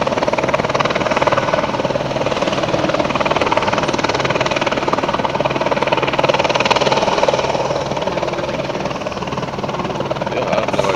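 Low-flying helicopter, its rotor beating in a rapid, steady chop over the engine's hum, growing a little louder partway through.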